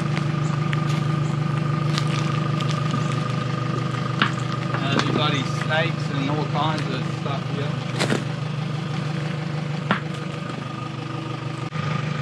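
A steady engine-like drone, idling evenly with a fast pulse, runs throughout. A few sharp knocks stand out, the sharpest about eight seconds in, and faint voices come through around the middle.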